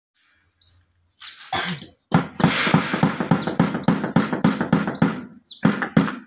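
A small bird chirping over and over in short, high, falling chirps. From about two seconds in, a quick run of sharp taps or knocks, about four a second, is louder than the bird.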